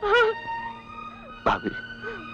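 A woman crying out in sobbing wails: two short cries that rise and fall in pitch, one at the start and one about one and a half seconds in, over held notes of background film music.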